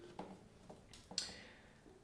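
A quiet pause between speech, with a few faint short clicks, one a little after the start and a slightly louder one just past the middle.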